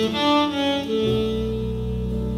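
Jazz ballad with tenor saxophone and piano, played back through Line Magnetic 812 Iconic horn loudspeakers in a treated listening room. Low bass notes come in about a second in.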